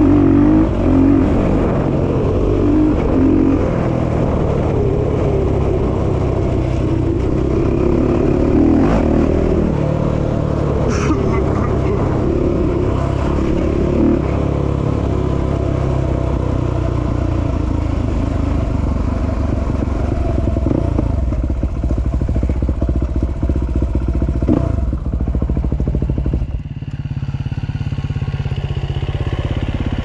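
Honda dirt bike engine running under way, its pitch rising and falling with the throttle, over wind and rattle. About four seconds before the end it drops to a steadier, quieter low running as the bike slows to a stop.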